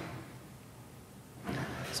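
A quiet pause filled only by a faint, steady hiss, then a man's voice beginning near the end.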